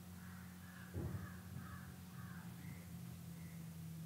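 Faint bird calls, a quick run of short harsh calls followed by two fainter ones, over a steady low hum. A dull thump about a second in.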